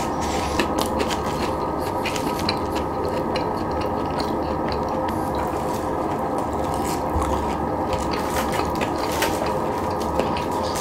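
Close-miked eating: a person chewing food, with many quick, irregular wet mouth clicks and smacks over a steady low background noise.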